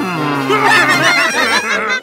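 Several cartoon voices laughing loudly in quick, wavering bursts over music, opened by a sound that slides down in pitch in the first half second.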